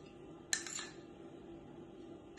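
A metal spoon clinks once against a bowl about half a second in, while garlic oil is spooned out; the rest is faint room sound.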